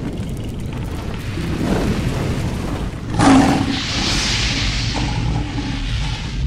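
Cinematic logo-intro sound effects: a steady low rumble, a heavy boom-like hit about halfway through, then a rushing hiss that swells and holds to the end.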